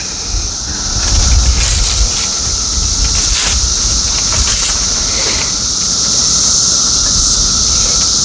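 Hook-and-loop (velcro) straps of a tall fracture walking boot being pulled and pressed down, giving a few short rasps over a steady hiss and low rumble.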